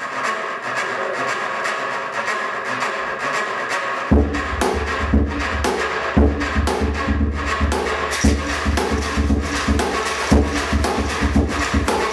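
Percussion on plastic beer crates: a drumstick scraped and rubbed along the crate's ribbed plastic sides in a fast rasping rhythm. About four seconds in, deep drum beats join in a quick, steady groove.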